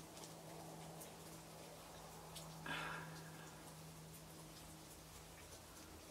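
Quiet room tone with a steady low electrical hum, a few faint ticks, and one brief soft rustle-like noise about two and a half seconds in.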